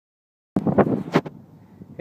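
Silence for about half a second, then wind buffeting on a handheld camera's microphone with a couple of sharp handling bumps, dying down to a low rustle just before talk begins.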